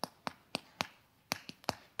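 Chalk tapping and striking a blackboard while writing: about seven short, sharp taps.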